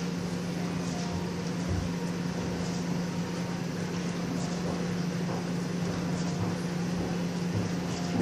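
Ceiling fan running overhead: a steady, low electrical hum over a faint even whoosh of air.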